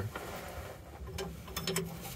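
A hand wrench on an air-brake spring chamber's bolt hardware: a few faint, light metal clicks in the second half.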